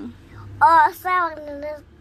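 A two-year-old girl singing three short sung syllables, the pitch settling lower on the last two.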